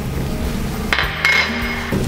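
A metal spoon clinks against glass dishes about a second in, leaving a brief ringing tone, over steady background music.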